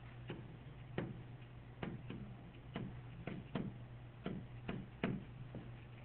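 A pen stylus tapping and clicking on a tablet screen during handwriting: about a dozen short, irregularly spaced taps over a low steady hum.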